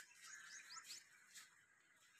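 Faint bird chirps: three or four short rising chirps in the first second, then near quiet.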